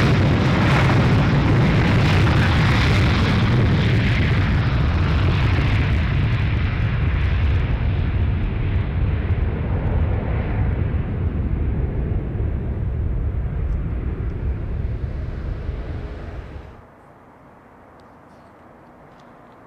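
Twin jet engines of a Spanair Airbus A321 at takeoff thrust on the takeoff roll: a loud, steady roar that slowly loses its high end and fades as the airliner lifts off and climbs away. The roar cuts off suddenly near the end, leaving a much quieter background.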